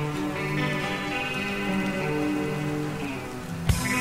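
Black/melodic death metal demo recording: a slow melodic passage of held notes. Near the end drums and distorted guitars come in, with regular heavy hits.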